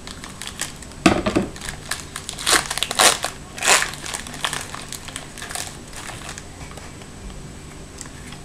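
Crinkling of a trading-card pack wrapper as it is cut open with scissors and the cards are pulled out. It comes in irregular bursts, loudest from about one to four seconds in, then fades to fainter rustles.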